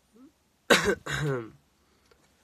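A young man coughs twice in quick succession, a sharp hack followed by a voiced, throaty cough, while smoking a cigarette.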